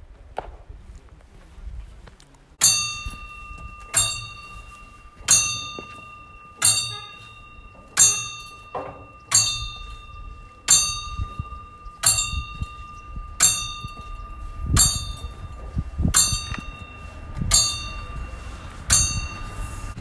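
Bell on a large Tibetan Buddhist prayer wheel, struck once each turn as the wheel is spun. It gives a clear ding about every second and a third, thirteen in all, and each ring carries on until the next.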